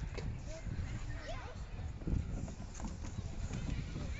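A child sliding down a playground slide: a low rumble with irregular bumps as clothing and shoes rub and knock on the slide, loudest about two seconds in, mixed with handling noise on the microphone.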